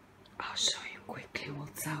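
Speech only: a person talking quietly, half-whispered, starting about half a second in after a moment of quiet room tone.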